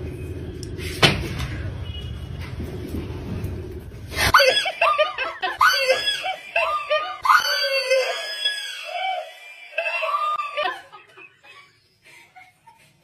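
A woman screaming in fright, a string of high, broken shrieks starting about four seconds in and dying away near the end.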